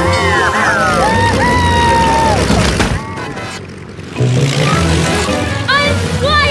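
Cartoon soundtrack of music and sound effects. A long, sliding, pitched sound settles into a held tone over the first couple of seconds; the sound drops back briefly about three seconds in, and a wavering pitched cry comes near the end.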